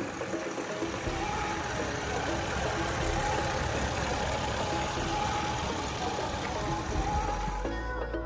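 Toyota Mark II Tourer V (JZX100)'s 2.5-litre turbocharged straight-six, the 1JZ-GTE, idling steadily with the bonnet open.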